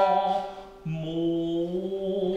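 Male voice singing long held notes in traditional Japanese song to shamisen accompaniment: one note, ringing over a shamisen pluck, dies away, and a lower note starts a little less than a second in and is held steadily.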